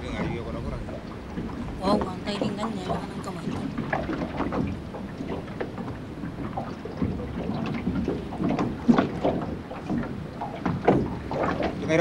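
Men talking among themselves over water moving against the hull of a small open boat, with some wind on the microphone.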